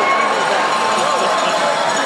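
Ice hockey arena crowd: many overlapping voices talking at once in a steady murmur, with no single voice standing out.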